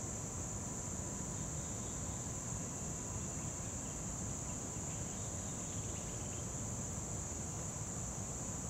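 Steady, high-pitched drone of insects calling without a break, over a low background rumble.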